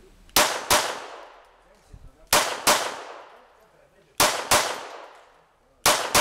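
Browning Model 1910 pistol in 7.65 mm (.32 ACP) fired in double taps: three quick pairs of shots about two seconds apart, then the first shot of a fourth pair near the end. Each shot is followed by a short ringing tail.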